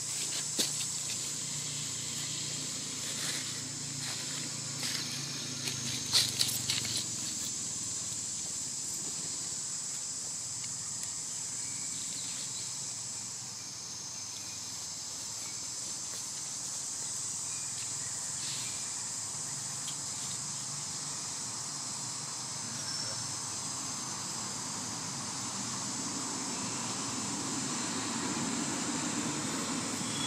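Steady, high-pitched chorus of insects droning without a break, with a few brief clicks about six seconds in.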